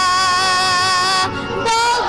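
Bosnian sevdalinka folk song with a boy soloist, children's choir and accompaniment. A long held note breaks off briefly, and a new note begins near the end.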